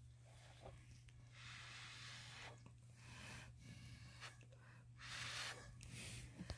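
Faint puffs of breath blown through a drinking straw onto wet pour-painting paint, pushing it into thin lines: three soft bursts of air, the first about a second long. A steady low hum runs underneath.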